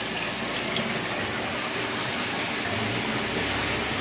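Steady rush of running water churning the surface of a shallow goldfish holding tank.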